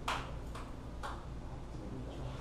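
Three sharp clicks from a laptop's keyboard, about half a second apart, the first the loudest, as a presentation's slides are advanced.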